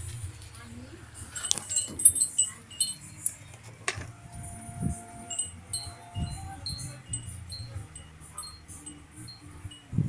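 Light chimes tinkling in short, scattered high notes, over a low steady hum.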